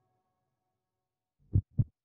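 The last of the outro music fades out, then near the end come two short, deep thumps about a quarter second apart, a double-beat sound effect.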